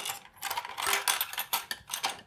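Small hard plastic and metal accessories clicking and clattering in a compartmented plastic accessory box as a hand rummages through it for a bobbin case: a run of light, irregular clicks.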